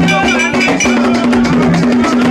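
Live gagá band playing: fast, dense percussion with ringing metal strikes over low held tones that alternate between two pitches.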